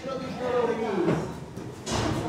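A person's voice speaking indistinctly, with a short noisy knock or rustle just before the end.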